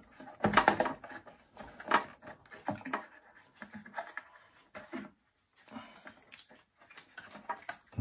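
Irregular clicks, taps and rustles of hands working an iMac's logic board loose inside its housing, the strongest cluster about half a second in.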